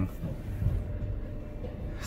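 Low steady mechanical rumble with a faint hum, heard from inside a car at the entrance of a car wash tunnel.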